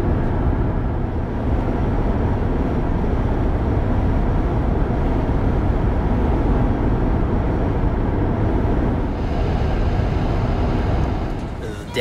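Steady road and wind noise of a car travelling at highway speed, a continuous rumble strongest in the low end.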